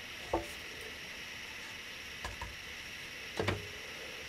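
Light knocks and handling as a plastic funnel is pulled from a wax-coated cardboard tube and the tube is worked over a pot of melted wax, over a faint steady hiss. The loudest bump comes a little before the end.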